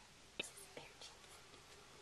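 Near silence: room tone, with a few faint, brief sounds about half a second in and again around one second in.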